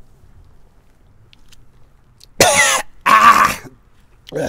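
A man coughing twice in quick succession, two loud, harsh coughs about two and a half seconds in.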